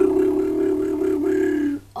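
A child's voice holds one long, steady note for nearly two seconds, then cuts off suddenly near the end: a vocal stunt that fails.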